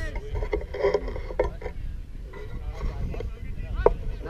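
Distant shouts from players on the field, short calls near the start, around a second in and just before the end, over a steady low rumble of wind on the microphone.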